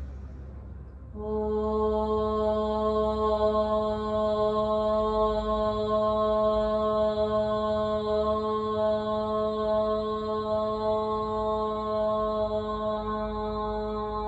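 A woman chanting one long, unbroken Om on a single steady pitch, beginning about a second in.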